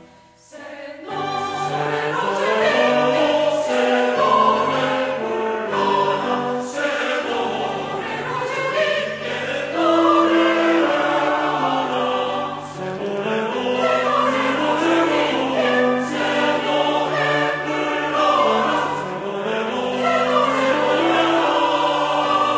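Mixed church choir singing a choral anthem in Korean, coming back in after a brief pause about a second in.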